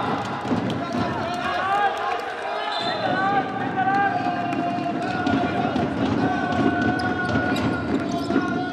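Live sound of an indoor futsal game: players' voices calling out over the court, with frequent short knocks of the ball and shoes on the wooden floor.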